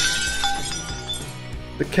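Glass-shattering sound effect: a sudden crash at the start, its tinkling ring fading away over about a second and a half, over soft background music.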